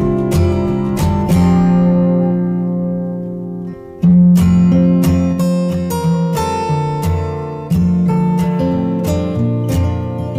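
Background music on acoustic guitar, plucked and strummed notes ringing out, with a brief drop just before a loud chord about four seconds in.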